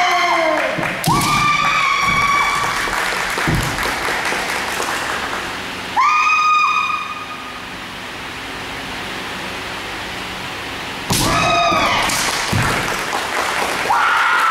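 Kendo players' kiai: long, held yells, four in all, near the start, about a second in, about six seconds in and about eleven seconds in. Sharp knocks of bamboo shinai strikes or stamping feet on the wooden floor come between them, with a quieter spell after the third yell.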